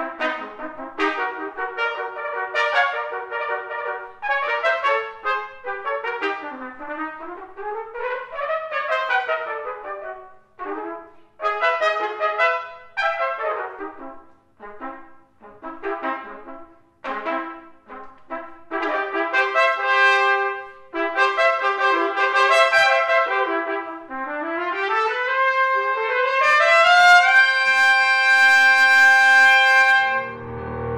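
Two trumpets playing a duet with no accompaniment, in fast runs that rise and fall between short phrases. In the last few seconds they climb to a long held final note.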